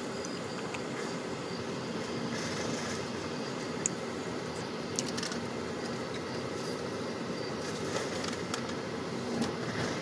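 Steady road and engine noise of a moving car heard from inside the cabin, with a few faint ticks about four and five seconds in.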